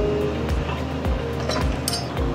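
Background music with a steady beat, and a sharp metallic click near the end as the retaining pin comes out of the steel beavertail fixture.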